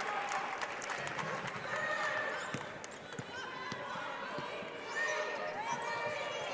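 Basketball arena ambience: a murmur of crowd and distant voices, with the scattered short knocks of a basketball bouncing on the court.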